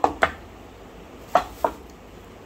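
Four short, sharp knocks of a kitchen utensil against a wooden board or dish: two in quick succession at the start and two more about a second and a half in.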